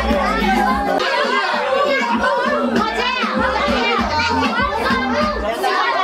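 Many children talking, laughing and shouting excitedly at once over dance music with a deep bass beat. The music's bass cuts out near the end.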